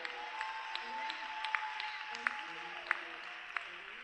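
Church congregation applauding and calling out in response to the preacher, with scattered sharp individual claps standing out.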